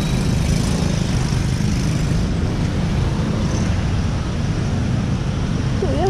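Steady ride noise from a Honda Click 150i scooter moving through traffic on a wet road: a low rumble of wind on the camera's microphone, with the scooter's engine and tyre noise beneath it.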